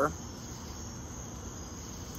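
Crickets chirping steadily in the background, a continuous high trill with no other sound over it.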